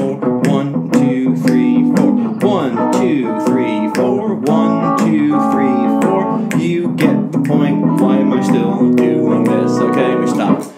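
A 12-bar blues backing track in E plays from a looper, with a steady drum beat under guitar chords and notes, some of them bending in pitch.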